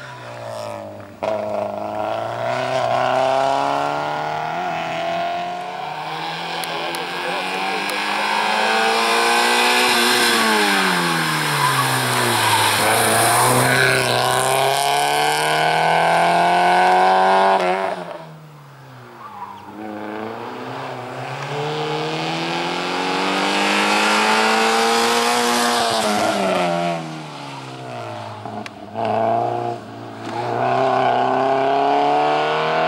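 A small Group A5 hatchback's engine being driven hard through a slalom, its revs climbing and falling again and again as it works between the cones. The engine drops away sharply about eighteen seconds in, then climbs again.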